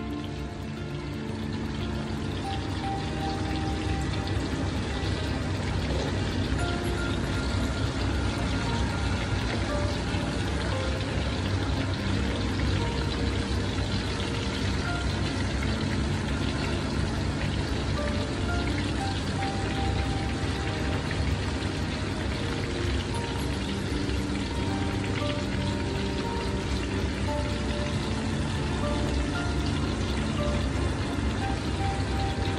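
Spice-coated fish pieces shallow-frying in hot oil in a pan, a steady sizzle, with background music playing over it.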